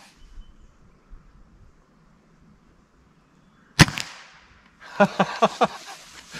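A suppressed Hatsan Mod 130 QE .30 caliber break-barrel air rifle fires a single shot about four seconds in: one sharp crack with a brief ringing tail.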